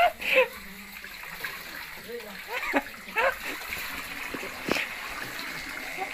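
Water running and splashing over metal basins at an outdoor water pipe, with short bursts of voices over it and a single sharp knock near the end.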